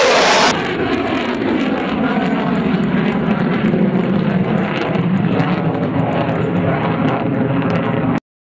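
F-15 fighter jet's twin engines in flight, heard as steady jet noise. A louder, brighter stretch stops abruptly about half a second in.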